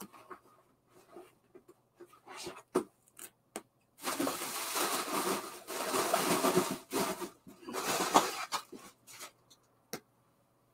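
Snakeskin-print handbag being handled and turned over: rustling and rubbing of the bag and its straps, with scattered light clicks. The loudest rustling comes in a stretch from about four to seven seconds in, with another shorter burst around eight seconds.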